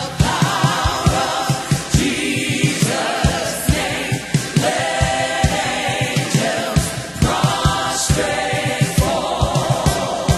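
Gospel choir singing over a live band, with a drum kit playing frequent kick and snare hits and cymbals.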